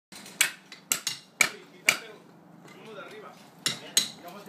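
Hand hammer blows with sharp clinks: four evenly spaced strikes about half a second apart, a pause, then two more near the end.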